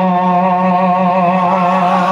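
A man chanting in a melodic religious style, holding one long sung note steady with a slight waver.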